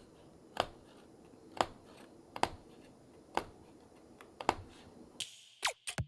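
Punch needle stabbing yarn through fabric stretched tight in an embroidery hoop: a short sharp click with each stitch, about one a second and unevenly spaced.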